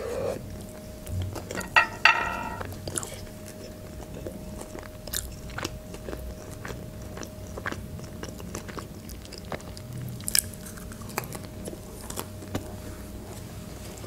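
Close-miked chewing of a soft bun with a fried chicken strip filling: a bite, then wet mouth clicks and smacks scattered through, with a short hum-like voiced sound about two seconds in.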